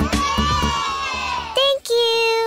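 A chorus of children's voices shouting and cheering together, the cartoon egg characters clamouring to be picked, followed by a brief tone near the end.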